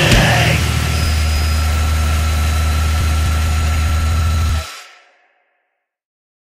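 Distorted guitar and bass from a powerviolence band held as a loud, sustained droning chord with a steady feedback tone on top. It cuts off suddenly about four and a half seconds in.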